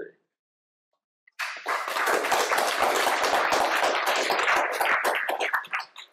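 Audience applauding, many hands clapping in a hall. It starts suddenly about a second and a half in after a near-silent start, and dies away near the end.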